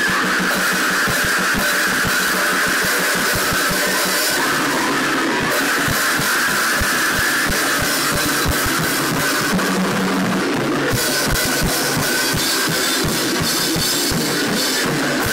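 A metal band playing loud in a small room: fast, dense drum kit hits with crashing cymbals under a sustained electric guitar.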